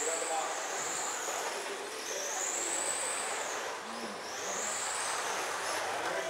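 1/10-scale electric RC sprint cars running on a dirt oval: a high motor whine that swells and fades three times as the cars circle the track, over a steady hiss.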